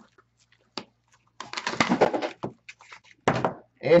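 Cellophane wrap on trading-card boxes and packs crinkling and tearing as they are opened by hand. It comes in a dense burst of about a second midway, with a shorter burst near the end.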